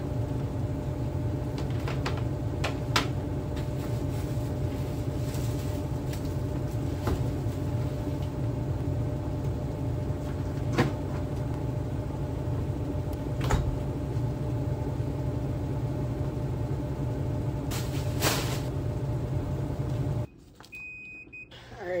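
A laundry machine running with a steady low hum, with a few sharp clicks and knocks from a garbage can and bag being handled. The hum cuts off abruptly near the end.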